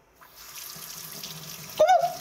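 Kitchen faucet turned on, water starting and then running steadily into a stainless steel sink. Near the end, a brief loud cry cuts in.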